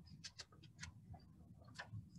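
Near silence with a few faint, short clicks scattered through it.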